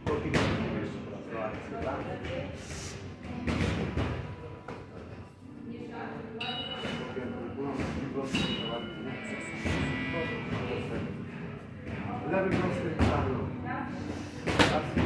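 Boxing gloves and kicks hitting focus mitts and a padded thigh shield in a series of dull, irregularly spaced thuds.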